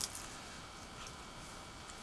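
Quiet room tone with a faint click about a second in.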